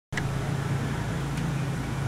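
A steady low mechanical hum over a faint even hiss of outdoor background noise.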